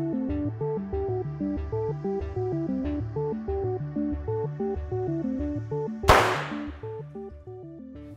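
Background music with a stepping melody, broken about six seconds in by one sharp, loud bang, the loudest sound here: soap bubbles filled with a stoichiometric hydrogen–oxygen mixture being ignited. The music carries on more quietly after the bang.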